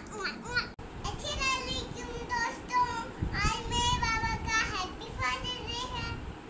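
A young girl talking in a high voice, in short phrases.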